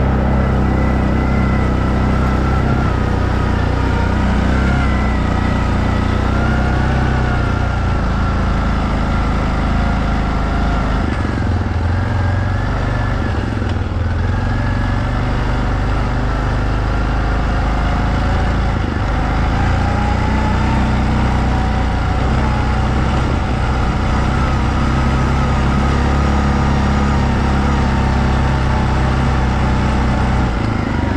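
Kymco MXU 700 ATV's single-cylinder engine running as it is ridden, its pitch rising and falling with the throttle.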